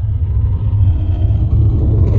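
Deep rumbling swell of an intro sound effect, building steadily louder.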